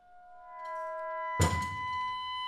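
Freely improvised music: sustained high tones rise out of near quiet, and about one and a half seconds in a single heavy drum stroke lands with a deep thud, the tones ringing on after it.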